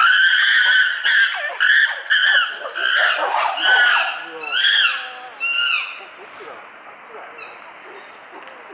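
Chimpanzee loud calls: a rapid series of high, screaming cries, some rising and falling in pitch, that die away about six seconds in.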